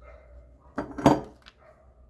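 A small ceramic bird figurine handled and set down on a painted metal tray: a quick cluster of clinks and knocks about a second in, with one more light click just after.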